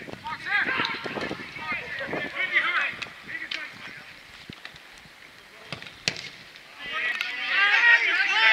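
Shouting on a football pitch: players and touchline voices calling out during play, loud in the first few seconds, dropping to a quieter stretch broken by a few sharp knocks, then rising to loud shouting again near the end.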